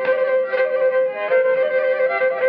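Instrumental Pontic Greek folk music: a bowed Pontic lyra (kemenche) playing a melody over a steady drone note.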